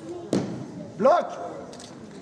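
A single sharp thud about a third of a second in: a weightlifter's feet landing on the wooden lifting platform as he drops under the barbell to catch a snatch overhead.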